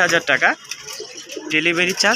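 Caged fancy pigeons cooing, low and faint between a man's words.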